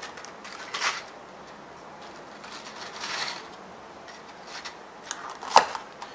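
Small steel fishing hooks clicking against each other and the rustle of their plastic box as three hooks are picked out by hand and laid down, with a sharp click near the end.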